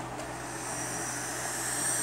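A puff drawn on a box-mod electronic cigarette: air hissing through the atomizer's airflow holes with a high whistle, lasting nearly two seconds, growing slightly louder and stopping sharply at the end.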